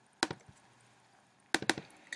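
A few short, sharp clicks from working a computer's mouse and keys: one about a quarter second in, then a quick run of four or five about a second and a half in.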